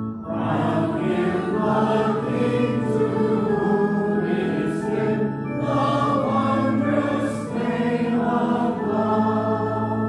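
A congregation singing a hymn together over an accompaniment of long held low notes, with a brief dip between phrases just after the start.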